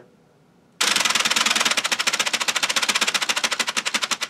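Wooden gear train and mock six-cylinder engine of a Ugears laser-cut wooden semi-truck model clattering as its wound rubber-band motor unwinds, the pistons moving up and down. The rapid clicking starts about a second in, at over a dozen clicks a second, slowing slightly toward the end.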